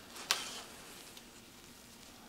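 Quiet handling of a lace undergarment with hang tags: one brief sharp click about a third of a second in, then faint room tone.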